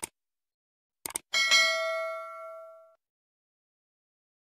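Subscribe-button animation sound effect: a short click at the start and a quick double click about a second in, then a notification bell ding that rings and fades away over about a second and a half.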